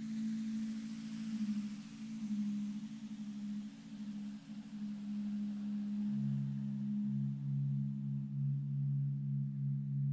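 Meditation background music of sustained low drone tones, held steady, with a further low tone joining about six seconds in.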